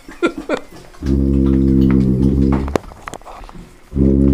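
Sousaphone playing one low, steady, loud note of nearly two seconds, starting about a second in and stopping with a click; another low note starts right at the end.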